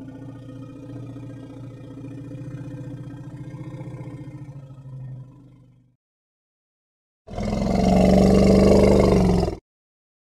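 African forest elephant calling: a low, steady pitched call that fades away about five to six seconds in, then after a short silence a loud, harsh roar lasting about two seconds.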